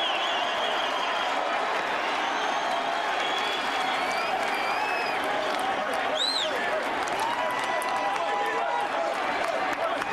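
Ballpark crowd noise: a steady din of many voices with cheering and applause for a home run. A brief high tone rises and falls about six seconds in.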